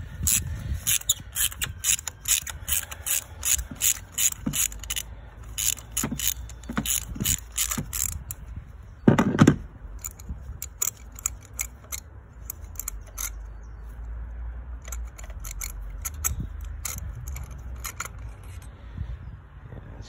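Ratchet wrench with a spark plug socket turning a spark plug out of the engine: the pawl clicks rapidly, several times a second, for about the first eight seconds, then more sparsely. One louder knock comes about nine seconds in.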